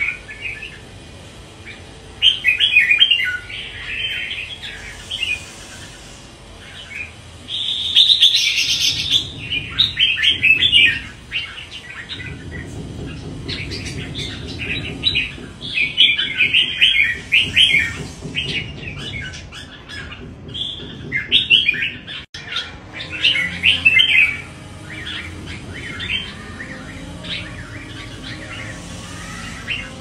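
Red-whiskered bulbul singing in bursts of rapid, high chirping phrases, each a few seconds long, with short pauses between them.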